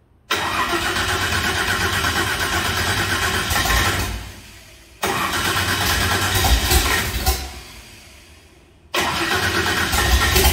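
An old truck's engine being started in three tries. Each try starts suddenly, runs steadily for about three seconds, then dies away; the third begins near the end.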